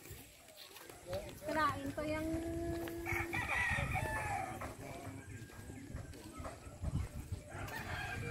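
A rooster crowing once, one long call of about three seconds starting about a second and a half in.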